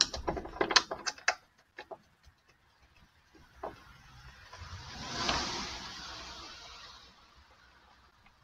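Light clicks and small metallic taps as a compressed-air line fitting is screwed on finger-tight at a waste-vegetable-oil burner, followed about four seconds in by a soft rushing noise that swells and fades over roughly three seconds.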